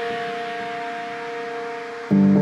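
Ambient space music: a synthesizer pad holds two steady notes over a hissing wash, slowly fading.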